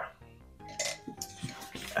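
Soft background music over light handling noises: a small clatter at the start and then rustling as paper dollar bills are picked up and handled.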